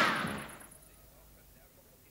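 The tail of a cartoon gunshot sound effect, a sharp bang that dies away within the first second, followed by near silence.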